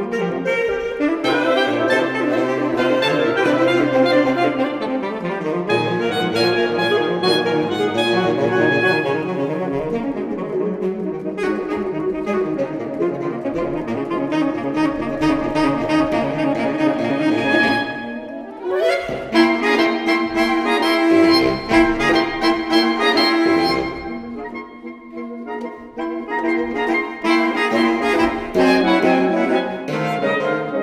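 Saxophone quartet of soprano, alto, tenor and baritone saxophones playing live in a dense, busy passage. About 18 seconds in, a quick upward glide leads into a held note, followed by a sparser, quieter stretch before the full texture returns near the end.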